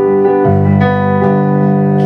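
Digital piano playing held chords, with new chords struck about half a second in and again around one second.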